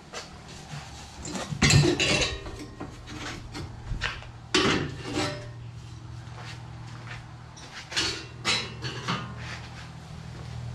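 Steel mounting frame clanking and scraping as it is worked loose and lifted off a plastic sprayer tank: a run of sharp metal knocks and rattles about two seconds in, another near five seconds, and a few more around eight to nine seconds.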